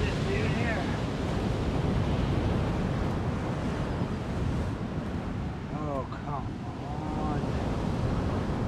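Sea surf breaking on a sand beach, with wind buffeting the microphone: a steady rushing noise.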